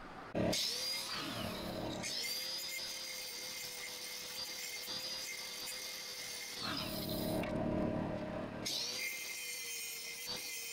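Electric angle grinder switched on and running with a steady high whine. From about seven to nine seconds in, it grinds the inside of a metal wing nut, a rougher, louder noise under load, then it runs free again.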